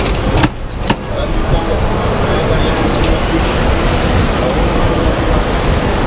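Busy pedestrian street ambience: a steady rumble of noise with many people chattering, and a couple of sharp clicks about half a second to a second in.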